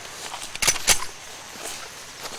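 A few short soft clicks, two of them about a second apart near the middle, over a faint outdoor background.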